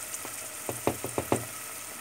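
Chopped onions frying in oil and butter in a steel pot: a steady sizzle, with a quick run of about five sharp pops a little after the middle. Flour has just been added on top to start a roux.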